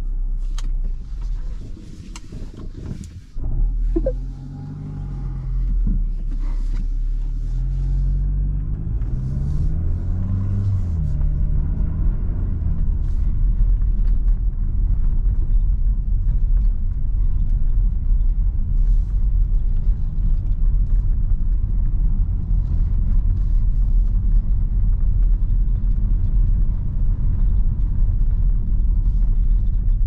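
Mitsubishi ASX II's 1.3-litre four-cylinder mild-hybrid petrol engine heard from inside the cabin as the car pulls away. A few clicks early on, then the engine note rises and breaks several times through the low gears, then settles into a steady low rumble of engine and tyres at low speed.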